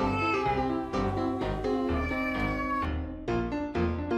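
Cat meowing, long drawn-out calls that slide down in pitch, over background piano music.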